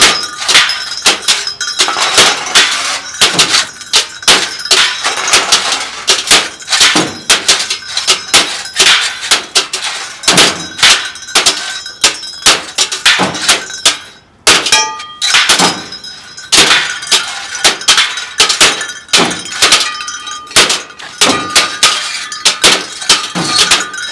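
Improvised scrap-metal noise jam: several people beating metal junk and glass with hammers and rods, a loud, dense, irregular clatter of metal clanks, thunks and breaking glass. The din drops out briefly about two-thirds of the way through, then resumes.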